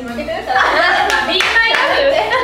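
Several young women laughing and talking over one another, with hand clapping among the voices.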